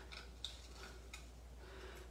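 Small scissors cutting around a piece of stamped paper: a few faint, irregular snips.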